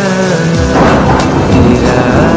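A Bollywood song breaks off about half a second in, and a loud rumble of thunder over heavy rain takes over.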